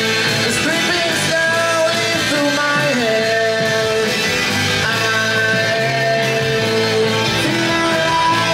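Live sixties-style garage rock band playing loud: electric guitars and drums with singing.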